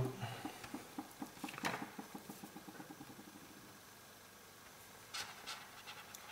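Faint handling sounds of tools on a workbench: a quick run of soft ticks, about seven a second, fading away over the first three seconds, then two light knocks near the end as a metal squeegee blade is set on a steel stencil.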